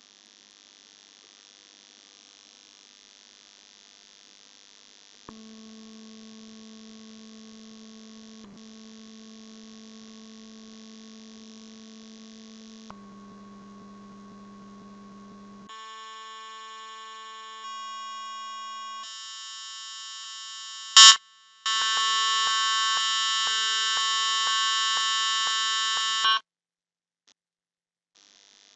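Synthesized test tones from a Fourier series applet, switched between different waveforms. A faint hiss gives way to a steady low buzzing tone about five seconds in. The tone changes its pitch and brightness abruptly several times. The last and loudest tone is bright and full of overtones and cuts off suddenly shortly before the end.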